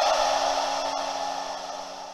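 Sound-design stinger under an animated title ident: a bright, hissy shimmer with a few low held tones, fading out steadily.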